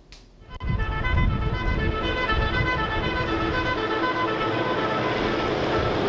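Background music with a tune of short stepping notes, over the low, uneven engine rumble of trucks driving past on a road. It starts about half a second in after a brief hush.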